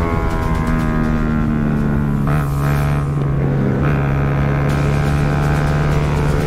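Background music with held, steady bass notes that change pitch twice, laid over a motorcycle engine running at speed.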